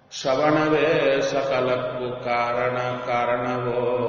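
A man's voice chanting a devotional verse in one long melodic line, mostly on a steady pitch with small bends, starting suddenly just after the start.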